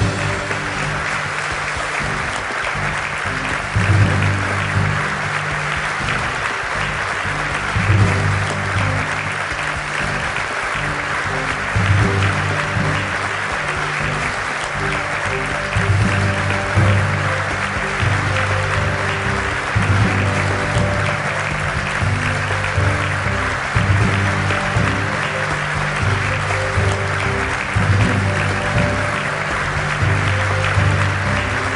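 Audience applauding over background music with a bass line whose notes swell about every four seconds.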